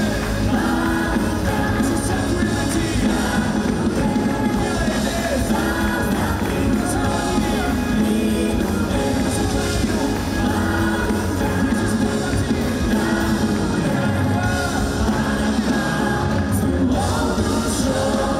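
A live worship band playing, with several singers leading a song over drums and electric guitar.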